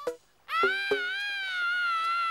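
A baby's long, high wail starting about half a second in after a brief near-silent gap, over background music with short plucked notes.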